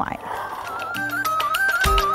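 Short musical jingle for a commercial break: a rising swell, then a melody line that steps up and down with quick ornamental turns, and a low beat coming in near the end.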